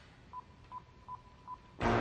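Four short electronic beeps at one pitch, evenly spaced about 0.4 s apart, over a faint held tone of the same pitch. Near the end the full band of the song comes in loudly.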